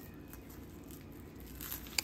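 Faint rustling and crinkling of plastic twine as fingers pull its strands apart, a little more crinkly near the end.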